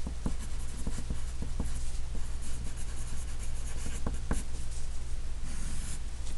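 Wooden pencil writing on graph paper: a run of short, light scratching strokes as two words are lettered by hand.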